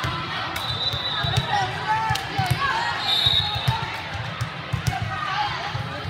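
Thuds of balls bouncing on a hardwood gym floor under a steady babble of many voices in a large hall, with two short high-pitched tones, one about a second in and one around three seconds.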